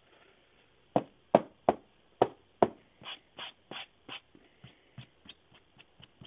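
Clear rigid plastic top loaders holding trading cards clicking and tapping as they are handled. Five sharp clicks come about a second in, then a run of softer, scratchier taps that fade toward the end.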